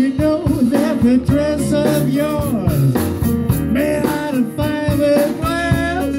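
Live blues band with a horn section of saxophone, trombone and trumpet playing over upright bass, drums and guitar, at a steady beat.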